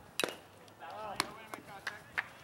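A single sharp crack of a pitched baseball meeting the plate area, a hit or a catch, followed about half a second later by players' voices calling out on the field.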